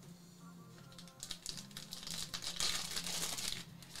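Plastic wrapper of a football trading-card pack crinkling and tearing as it is ripped open by hand, a dense crackle from about a second in until just before the end.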